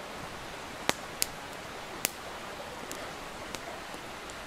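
Wood campfire crackling: a few sharp pops, the loudest about one and two seconds in, over a steady soft hiss.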